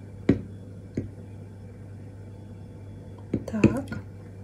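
Two light clicks of a plastic measuring jug in the first second as melted soap base is poured from it into a soap planter, then a low steady hum.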